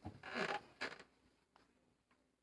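A chair creaking briefly for about half a second, then a shorter scrape just under a second in.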